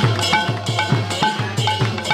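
Devotional kirtan percussion: a hand drum keeps a fast, even beat of about four strokes a second, its bass strokes sliding down in pitch, with small hand cymbals ringing on the beats.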